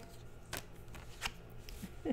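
Tarot cards handled: a card is drawn from the deck and turned over, giving a few faint, sharp snaps of card stock.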